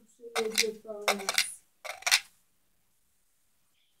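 A child's voice saying a few soft words, with sharp clicks among them, falling silent about two seconds in.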